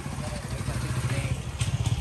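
Motorcycle engine idling close by, a low rapid pulsing that grows louder about three quarters of the way through.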